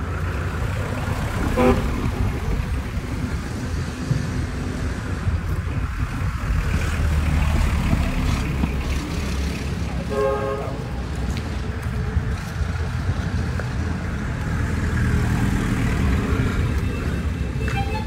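Street noise with a steady low rumble of traffic. A car horn beeps once for under a second about ten seconds in, after a shorter toot near the start.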